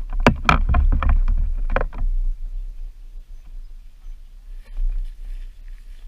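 Handling knocks and bumps on the Pro Boat Blackjack 29 RC boat's hull, picked up by the camera mounted on it. A quick run of sharp knocks over a low rumble comes in the first two seconds, then it settles to quieter, uneven rubbing.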